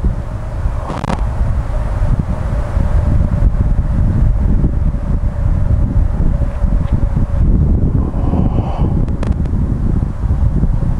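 Wind buffeting the microphone: a loud, uneven low rumble throughout, with a faint steady hum underneath. A couple of short knocks come about a second in and near the end.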